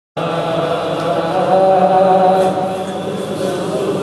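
Male vocal chanting of a naat: a slow melody of long, steadily held notes.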